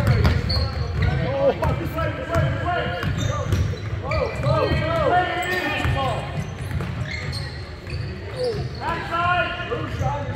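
Basketball game on a hardwood gym floor: the ball bouncing in repeated knocks and sneakers squeaking in short bursts, with players and spectators calling out and chattering, all echoing in the large gym.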